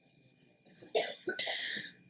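About a second in, a person gives a faint, short cough, followed by a brief breathy hiss.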